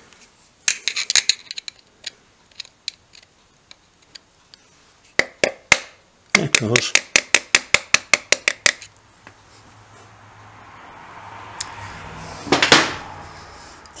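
A steel pick picking and tapping at the remains of a sheared Woodruff key in the keyway of a Royal Enfield Bullet's timing-side shaft. It makes sharp metal-on-metal clicks: a scatter of them at first, then a quick run of about a dozen, some five a second. Near the end there is one louder scrape.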